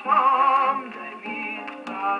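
1929 Columbia 78 rpm dance-band record playing on an acoustic gramophone, with a narrow, boxy sound. The vocal refrain ends on a wavering held note under a second in, then the orchestra plays more softly, with a single surface click near the end.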